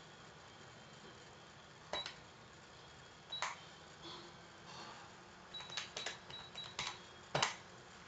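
Computer mouse clicking a handful of times over faint room tone: single clicks about two and three and a half seconds in, a quick run of clicks around six seconds, and the loudest click near the end.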